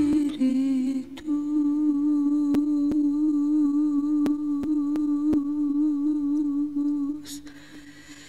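Music: a voice humming one long held note with a slight waver, over sparse faint clicks. It fades down near the end.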